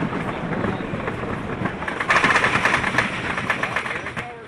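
Wooden roller coaster train rolling along the track with wheel rumble and clatter. About two seconds in, a louder, fast, steady clattering begins as the train reaches the lift hill and the chain lift takes hold.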